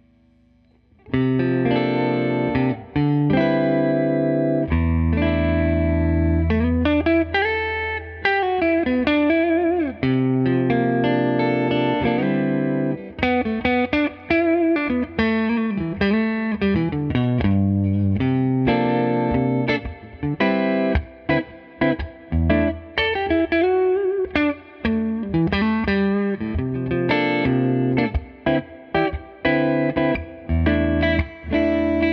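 Collings 290 DC electric guitar on its neck P-90 pickup, played through a Tone King Metropolitan amp: chords and single-note lines with string bends, starting about a second in. The second half has more short, choppy stabs.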